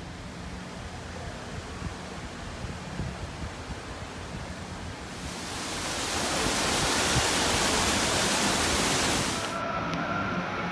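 Steady rushing noise with a low rumble, swelling about halfway through into a louder, brighter hiss that cuts off suddenly just before the end.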